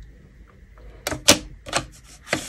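Clear plastic set square clicking and knocking against the drafting board's sliding straightedge as it is set in place: a few sharp clicks, the loudest a little past a second in and two more near the end.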